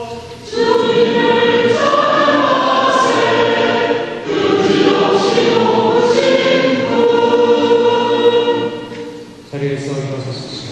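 Mixed church choir singing the responsorial psalm (gradual) in Korean, in sustained chords. There is a brief gap just after the start and a phrase break about four seconds in, and the singing fades and ends about half a second before the end.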